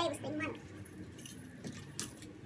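Faint handling sound of plastic-packaged lingerie being picked up and lifted from a desk, with a short voice sound near the start.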